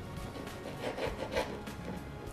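Soft background music, with a dry, repeated rasping of crusty baguette crust scraping against a cutting board as the loaf is handled.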